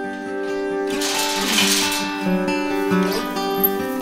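Background music: acoustic guitar playing a run of plucked and strummed notes.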